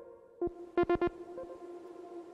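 Electronic synthesizer arpeggio from the u-he Diva soft synth fed through a pad and texture effects rack. A few short, plucked notes sound in quick succession about half a second in, over a steady held tone that rings on after them as a sustained pad.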